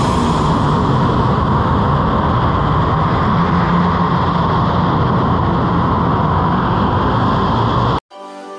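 Steady, loud din of a large indoor go-kart track hall: an even rumbling background noise with no music or speech standing out.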